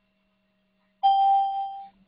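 A single chime about a second in: one bell-like tone that starts suddenly, holds its pitch for just under a second and fades out. A faint steady hum sits underneath.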